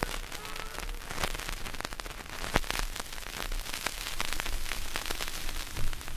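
Vinyl 45 rpm record surface noise after the song ends: a steady crackle and hiss with scattered clicks, the stylus tracking the lead-out groove near the label. A faint last note fades out within the first second, and there are a couple of louder pops, one about two and a half seconds in and one near the end.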